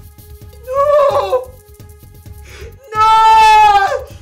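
A woman crying out loud in two wails, the second about a second long and dropping in pitch at its end, over soft background music.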